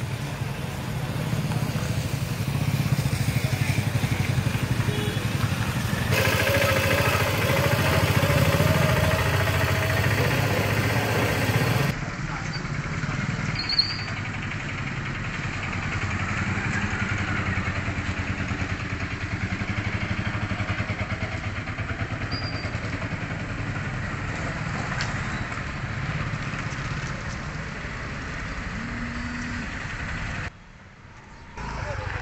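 Street traffic: motorcycle and car engines running and passing, changing abruptly about six and twelve seconds in, with a sharp knock about fourteen seconds in.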